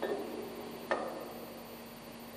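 Two sharp metallic clicks about a second apart as a wrench works the nut on a marine diesel's chain-tightener bolt, over a steady low hum.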